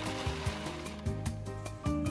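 Nuts pouring from a gravity-feed bulk bin into a plastic bag: a rushing rattle, loudest at the start and fading out within about a second and a half, over background music with a steady beat.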